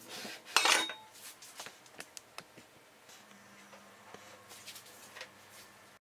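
Kitchenware clattering: one loud clink a little over half a second in, then a few light clicks and taps of dishes or utensils being handled.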